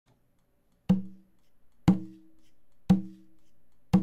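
Four evenly spaced percussive knocks, one each second, each with a short low woody ring that fades quickly.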